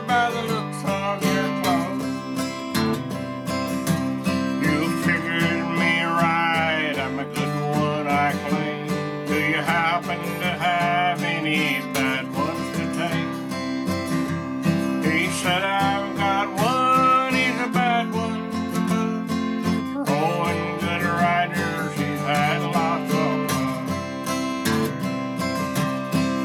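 Acoustic guitar strummed in a steady country rhythm, accompanying a man singing a verse of a cowboy ballad in phrases.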